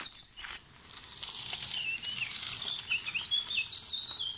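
A small bird singing faintly, a wavering run of high chirping notes starting about two seconds in, over a steady outdoor hiss.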